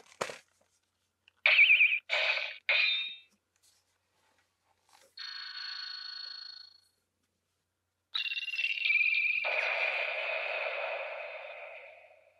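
Electronic sound effects from the TAMASHII Lab Laser Blade toy sword's speaker as the blade lights up: a click, then three short warbling bursts, a steady buzzing tone around five seconds in, and from about eight seconds a long held effect that fades away near the end.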